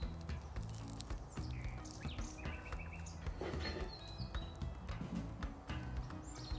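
Soft background music with birds chirping, over the crisp crackling of a pan-fried grated butternut squash fritter being torn apart by hand, with a brief rougher rustle about halfway through.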